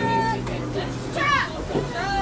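Voices of a crowd with short high-pitched calls, as the music stops at the start.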